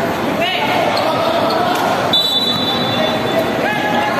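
Gym crowd chatter with short sneaker squeaks on the court. A little past halfway a referee's whistle sounds one steady high blast lasting just over a second.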